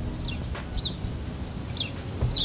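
A small bird chirping: a few short, high chirps, spaced unevenly, over a low, steady background hum of outdoor noise.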